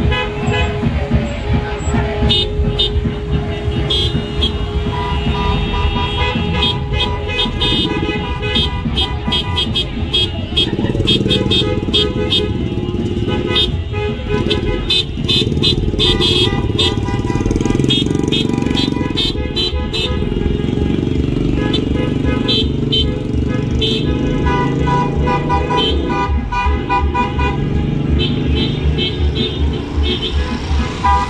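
A slow line of cars passing with engines running and car horns honking again and again, over music with a steady bass beat.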